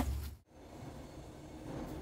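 Faint low rumble of outdoor background noise that cuts off suddenly about half a second in, then faint steady background hiss.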